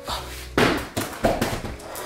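An armful of plastic mailer packages landing on a surface: two sharp thuds with a rustle of plastic, about half a second and just over a second in.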